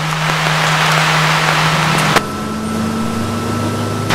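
Fire engine running, heard from inside its cab: a steady engine hum under a wide hiss. About two seconds in, a click cuts the hiss off and the hum carries on at a different pitch.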